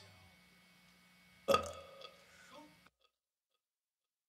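About a second and a half in, a person makes a single short belch-like vocal noise, with a faint trailing bit just after, then dead silence.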